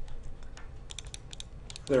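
A quick run of about ten light clicks from computer keys, stepping back through the moves of a game in chess software.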